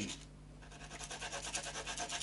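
Grub screws for an adjustable guitar nut being rubbed down by hand on abrasive paper: a fast, light rasping of rapid short strokes that starts about half a second in.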